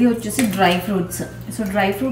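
A woman talking, with light clinks of stainless steel vessels being handled.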